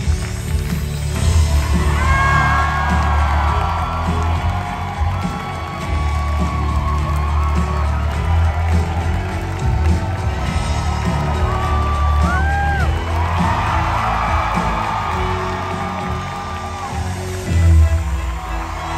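Loud curtain-call music with a heavy, steady bass under a theatre audience cheering, with a couple of sharp whoops about two-thirds of the way through.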